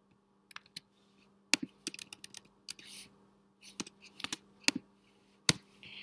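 Computer keyboard keystrokes and clicks in short, irregular runs, with one louder click near the end. A faint steady hum lies underneath.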